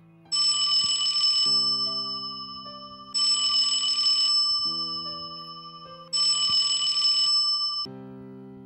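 Smartphone ringing with a rapid trilling ring, three rings of about a second and a half each, over soft keyboard music.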